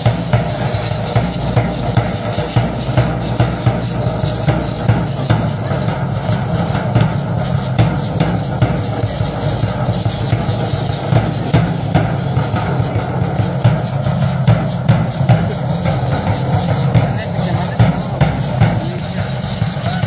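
Drum playing a steady, fast, even beat to accompany a traditional Mexican feather dance (danza de pluma).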